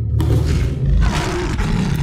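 Tiger roar sound effect: one long, rough roar that starts just after the beginning and lasts nearly two seconds, over the tail of bass-heavy background music.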